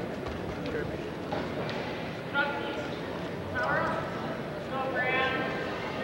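Several short, high-pitched shouts from people at the side of a wrestling mat, echoing in a gym, with a single sharp thump about two and a half seconds in.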